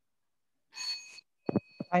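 A short bell-like ding about three-quarters of a second in, then a second, shorter ring just before a man starts speaking. It marks the end of the answer time.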